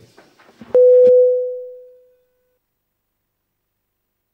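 A single electronic beep, a pure steady tone, starts with a click under a second in, is held for about half a second, then fades away over about a second.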